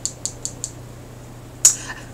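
Fingernails tapping lightly on a tarot card on a wooden table, about five quick clicks in the first half-second or so. Near the end, one short, loud cough.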